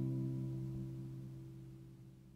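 Background music: a single strummed guitar chord ringing out and slowly fading away.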